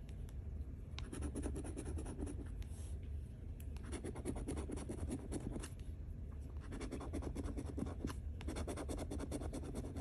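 A metal coin scraping the scratch-off coating from a lottery ticket, in bouts of rapid back-and-forth strokes with short pauses between, as each number is uncovered.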